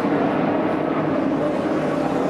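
A pack of NASCAR Sprint Cup stock cars' V8 engines droning steadily, heard as television race-broadcast track audio.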